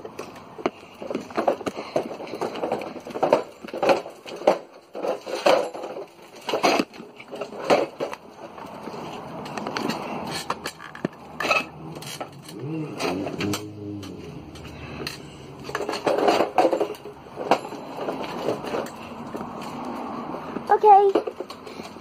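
Drift trike rolling over tarmac and a concrete garage floor, its frame and wheels giving off many short knocks and rattles as it is moved into place.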